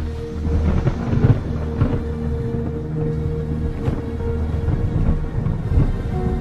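Dramatic film background music with low held notes and a heavy low rumble, loudest about a second in.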